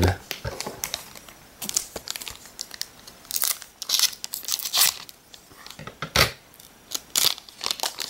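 Plastic booster pack wrapper crinkling and tearing as it is handled and ripped open, in a string of irregular crackly rustles that start about a second and a half in.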